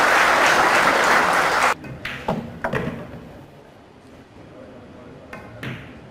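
Audience applauding loudly, then cut off suddenly a little under two seconds in, leaving a few faint scattered sounds.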